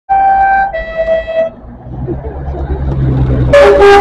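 Vintage coach horn giving two short toots, the second on a lower note, then the coach's engine running louder as it draws close. A loud horn blast of several notes at once starts about three and a half seconds in.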